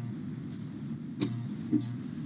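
Room noise through a call microphone: a low steady hum that swells and fades, with two faint clicks a little over a second in, about half a second apart.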